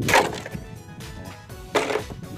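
Two loud, short rushes of noise on the phone's microphone, one at the start and one near the end, over faint background music.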